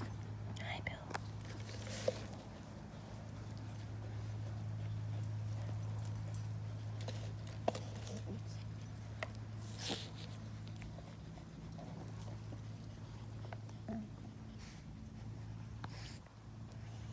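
A group of dogs milling about in a yard, with faint dog sounds and a few short scattered clicks over a steady low hum.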